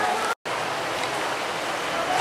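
Steady hiss of background noise with no distinct events, broken by a brief dropout to silence about a third of a second in.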